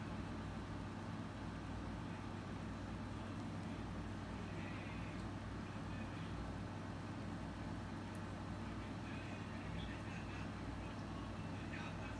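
Steady low hum of background room noise with no distinct events.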